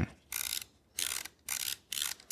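Aperture control of a camera being turned by hand, ratcheting through its click stops in three short bursts about half a second apart.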